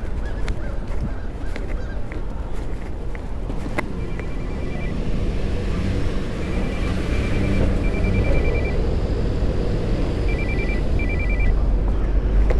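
City street traffic rumbling, heard from a camera in a jacket pocket. From about four seconds in, short bursts of rapid, high electronic beeping come several times.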